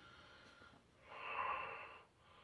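A person sniffing through the nose to smell the aroma of a glass of beer, one long inhale that swells about a second in and fades near the end.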